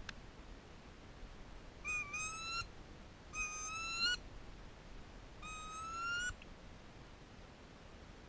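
Wood duck calling: three rising, whistled squeals, each under a second long, spaced a second or two apart.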